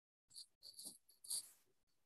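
Near silence over a video-call line, broken by three or four faint, short breathy sounds.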